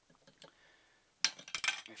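Sharp metallic clicks and clinks from handling the steel filter box and parts of a microwave oven magnetron: faint taps at first, then one loud click a little past the middle and a quick cluster of clicks just after it.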